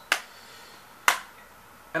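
Two sharp clicks about a second apart from a plastic Blu-ray case being handled and snapped shut.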